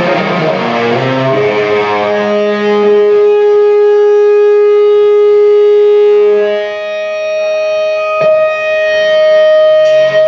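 Live instrumental rock band led by electric guitar: a busy passage, then the guitar holds one long sustained note for about five seconds, then slides to a higher sustained note, with a single sharp hit near the end.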